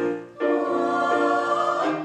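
Small mixed choir of men and women singing in harmony, holding long sustained chords. A short break for breath comes about a third of a second in, and the voices drop away again near the end.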